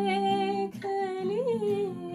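A woman singing long held notes of a slow melody, with a small rise and fall in pitch about one and a half seconds in, over an acoustic guitar being plucked softly.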